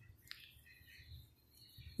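Near silence: room tone in a pause of speech, with one faint, brief high chirp about a third of a second in.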